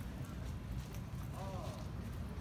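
Outdoor street background: a steady low rumble with a few faint knocks, and a short voice call about one and a half seconds in.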